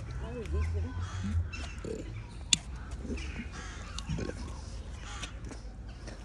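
Indistinct voices over outdoor background noise, with a single sharp click about two and a half seconds in.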